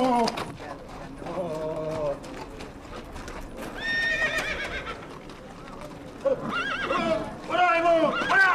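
Horses' hooves clopping as mounted riders pass, with horse whinnies, one about four seconds in and more near the end. A man shouts once at the very start.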